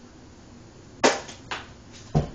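Two sharp knocks about half a second apart, the first the louder: a cat getting down from the top of a refrigerator, striking hard surfaces as it goes.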